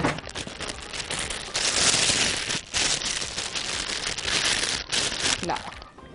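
Plastic piping bag crinkling as it is handled and opened, in two stretches of about a second each.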